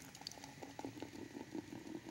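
Freshly opened 7 Up lemon-lime soda poured from a plastic bottle into a tall glass cylinder, fizzing faintly with many tiny irregular crackles as it foams up.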